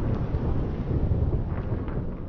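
Tail of a channel logo intro sound effect: a deep rumbling noise that slowly fades, with a few faint crackles near the end.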